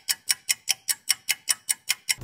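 Clock-ticking sound effect: even, crisp ticks about five a second, with silence between them.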